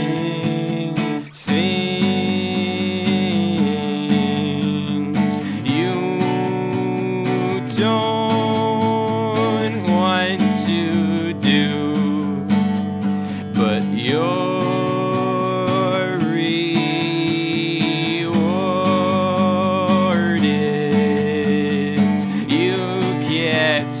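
Acoustic-electric guitar strummed steadily in a solo instrumental passage, with a brief break about a second and a half in.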